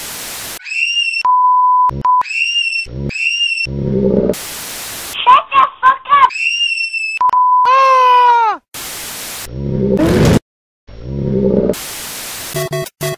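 A choppy collage of cartoon sound effects: bursts of TV static hiss, a steady 1 kHz bleep twice, short high-pitched cries, and a long cry that falls in pitch about eight seconds in.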